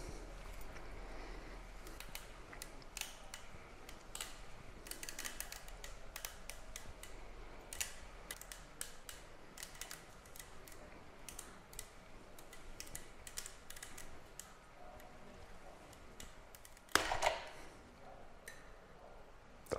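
Light, irregular clicks and metal taps from a dial torque wrench and socket fitting being worked on a hose torsion test rig as a garden hose is twisted, with one louder clunk about a second before the end.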